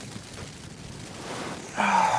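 Rain on a Cuben fibre tarp shelter, a steady hiss, with a louder sound starting just before the end.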